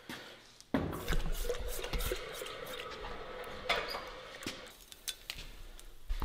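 A red-hot W2 steel knife blade, its spine coated with clay for differential hardening, is plunged into a water quench and sizzles and bubbles loudly. The hiss starts suddenly about a second in and eases off after about four seconds as the blade cools.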